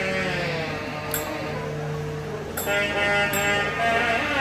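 Nadaswaram, the South Indian double-reed horn, playing a sustained, bending melody over a steady drone, with a few sharp thavil drum strokes.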